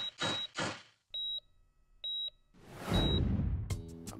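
A quick run of hissing pulses, then two electronic patient-monitor beeps about a second apart, then a whoosh that swells up to the end.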